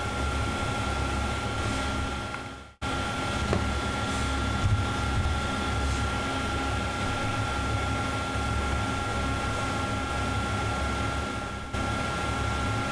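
Steady low background hum with a faint high whine, the recording's room or equipment noise. It fades out and cuts back in abruptly about three seconds in.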